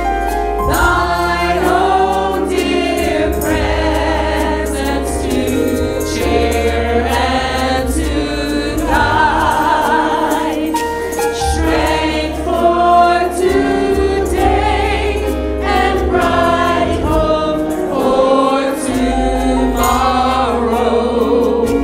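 Worship team of women's and men's voices singing a gospel praise song together over keyboard accompaniment, with long held bass notes underneath.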